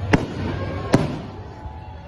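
Two sharp bangs of aerial fireworks bursting overhead, a little under a second apart.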